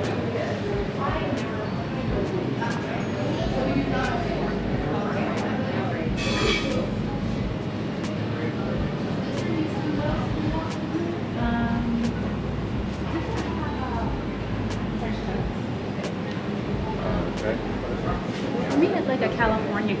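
Indistinct voices of people talking in a shop, over a steady low rumble.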